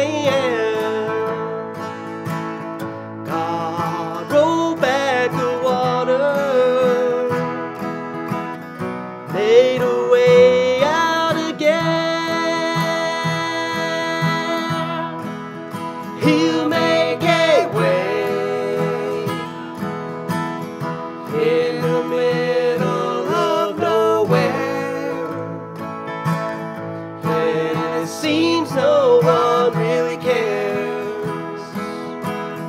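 Two acoustic guitars strummed together, accompanying two men singing a slow gospel song, with long held notes.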